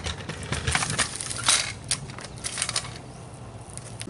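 Crunching and crackling of a kick scooter's wheels and feet over dry leaf litter and dirt: a quick run of crackles, loudest about one and a half seconds in, thinning out near the end.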